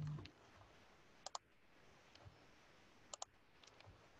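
Near silence with faint sharp clicks in close pairs, once about a second in and again about three seconds in. A short low hum cuts off just as it begins.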